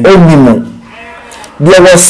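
A man's voice speaking: a drawn-out vocal sound falling in pitch at the start, a short quieter pause, then speech again near the end.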